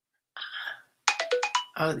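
Phone ringtone: a short hiss-like burst, then a quick run of electronic notes stepping up and down in pitch, lasting well under a second, cut off as a woman's voice starts near the end.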